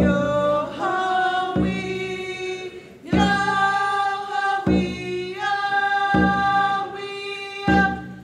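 Haida drum song: a group of women's voices singing together in long held notes over a single hand-drum beat about every one and a half seconds.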